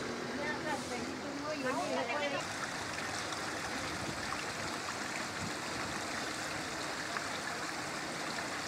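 Small stream running fast down a narrow rocky channel, a steady rushing of water. People's voices are heard over it for the first two seconds or so.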